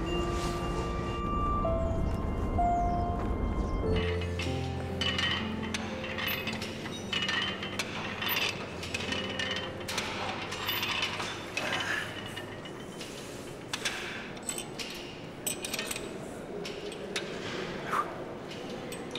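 Music for about the first four seconds, then a cable weight machine being worked: irregular metallic clinks and knocks from the weight stack and its pulleys.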